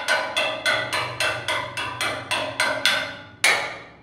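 Background music: a fast, even run of struck, pitched notes, about six a second, then a final note about three and a half seconds in that rings out and fades.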